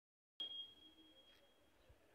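Near silence as recording begins: a faint, thin, high steady tone starts abruptly and fades away over about a second.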